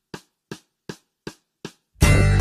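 Hip hop beat stripped down to a lone drum-machine hit repeating about three times a second, quiet and without bass, with the full beat returning right at the end.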